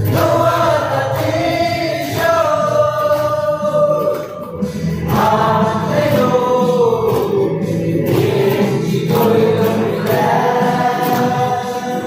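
A mixed group of young men and women singing a Mao Naga song together in unison, in sustained phrases a few seconds long, with hand claps keeping time.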